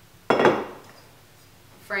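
A single sharp metal clank with a short ringing tail, as steel jack-stand parts knock together while the jack pad is fitted onto the stand.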